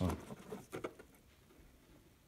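A plastic net pot being lifted out of its hole in a hydroponic tub lid: a few light clicks and taps within the first second.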